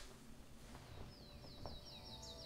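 Faint bird trill: a fast run of high, repeated down-slurred notes, about eight a second, starting about a second in.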